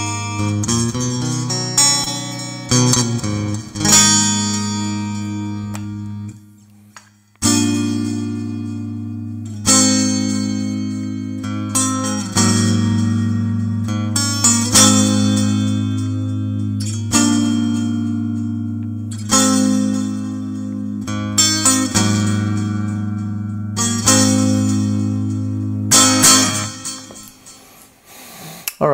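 Stratocaster electric guitar played through the NUX Mighty Air's acoustic-guitar simulator with a ping-pong delay on. It strikes chords about every two seconds and lets each one ring out.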